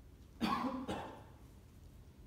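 A person coughing: two quick coughs about half a second apart, starting about half a second in.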